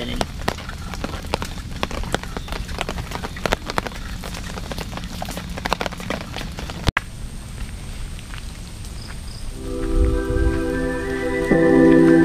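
Rain pattering on a tarp shelter: many small, irregular taps over a steady hiss. About seven seconds in the sound cuts, and slow ambient music with long held chords swells in.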